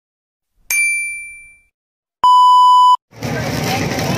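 Sound effects of an animated subscribe-button graphic: a bright bell ding that rings out and fades over about a second, then a steady electronic beep lasting under a second. Near the end, the bustle of a busy outdoor market crowd comes in abruptly.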